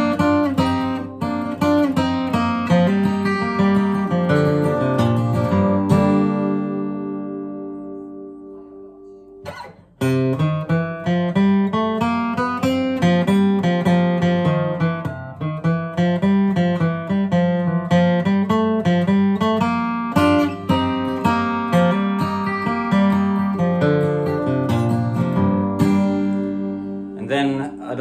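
Steel-string acoustic guitar with a capo, flatpicked: quick single-note melody lines mixed with bass notes and chords. About six seconds in, a chord is left to ring and die away for a few seconds, then the picking starts up again and runs on.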